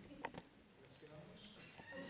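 Near silence: quiet room tone with faint murmured voices, and a couple of small clicks in the first half second.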